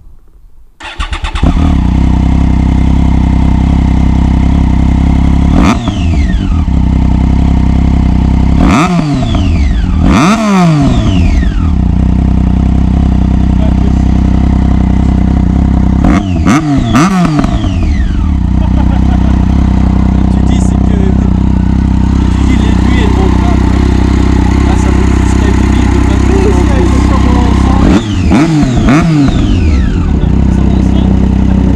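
Yamaha XJ6N inline-four motorcycle engine, fitted with a LeoVince aftermarket exhaust, starting about a second in and then idling loudly. Its throttle is blipped several times in clusters, the revs shooting up and falling back each time.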